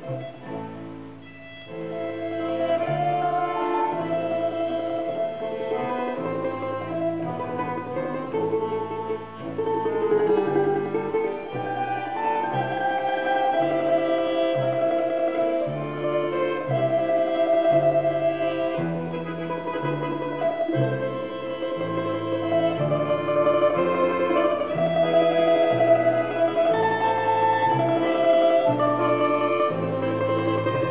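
Russian folk trio playing an old waltz: a domra carrying the melody over bayan (button accordion) chords and the plucked bass notes of a contrabass balalaika. There is a short lull about a second in, then the playing runs on steadily.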